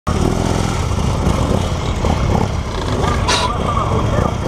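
Police motorcycle engine running at low speed while the bike weaves through a tight cone course, picked up by a camera mounted on the bike. A short hiss cuts in about three seconds in.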